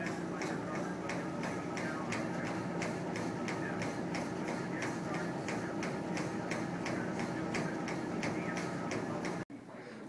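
Footfalls on a running treadmill belt, a steady beat of about three steps a second over the treadmill's steady hum. The sound cuts off suddenly about half a second before the end.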